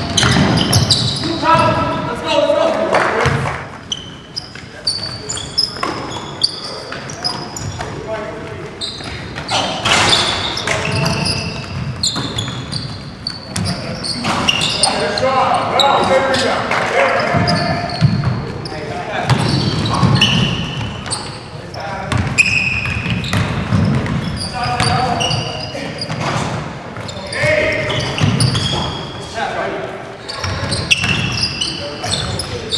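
Live pickup-style basketball game in an echoing gym: the ball bouncing on the hardwood floor, sneakers squeaking in short high chirps, and players calling out across the court.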